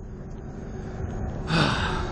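A man sighing heavily close to the microphone about one and a half seconds in, a breathy rush with a little voice in it, over a steady low rumble.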